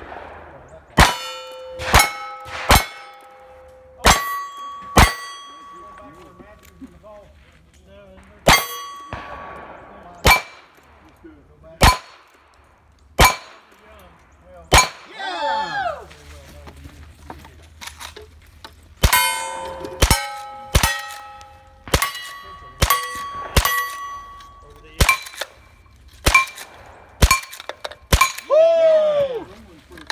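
Cowboy action shooting: gunshots, each followed by the ring of a hit steel plate target. Two strings of five revolver shots come about a second apart, then after a pause a faster string of about ten rifle shots. Twice, after the last shot of a string, a longer ringing tone falls in pitch.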